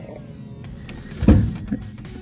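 The lid of a top-loading washing machine being lowered and shutting with a single thump about a second in, followed by a few lighter knocks.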